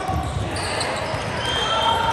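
Echoing sports-hall ambience: indistinct voices, thuds of balls on the wooden court floor and short squeaks of sneakers on the hardwood.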